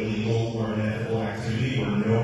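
A man speaking off-mic in a large echoing hall, his words indistinct, in a steady droning delivery.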